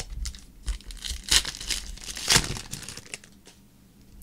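Foil trading-card pack wrapper being torn open and crinkled by hand, with two louder rustling tears about one and two seconds in, among lighter crackles.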